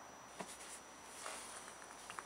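A quiet tap about half a second in, then a soft rustle, as a plastic motor-oil jug is tipped upside down and seated in an engine's oil filler neck to pour.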